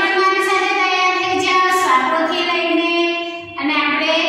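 A woman's voice singing in long, held notes, one voice alone without instruments.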